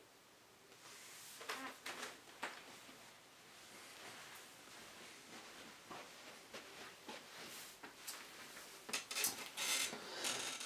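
Faint, scattered small clicks and rustles, with a denser cluster near the end.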